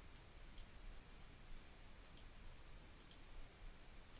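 Faint computer mouse clicks against near-silent room tone: a few single clicks, then two quick pairs about two and three seconds in.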